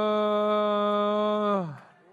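A man's voice through a handheld microphone holding one long vowel ('I-uh') on a single steady pitch, a tongues-style 'prayer language' intoning. A bit past halfway the pitch slides down and the voice fades out.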